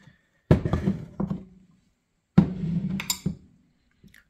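Two dull knocks about two seconds apart, each dying away over about a second, as a plastic headlight housing and tools are handled on a wooden workbench.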